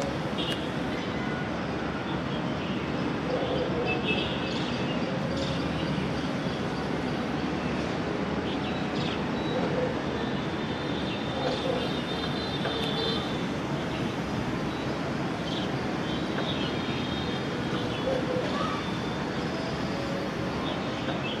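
Steady hum of distant city traffic heard from high above the city, with short, faint high-pitched tones breaking through now and then.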